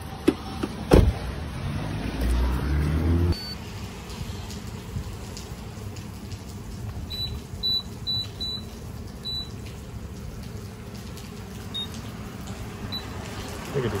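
Gas pump keypad beeping: short high beeps as its buttons are pressed, several in quick succession in the middle and a couple of fainter ones later. Before them come a sharp knock about a second in and a brief low mechanical hum that stops about three seconds in.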